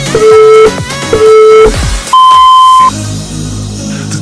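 Interval-timer countdown beeps over background music: two short low beeps a second apart, then a longer, higher final beep, signalling the end of the rest period and the start of the next exercise minute.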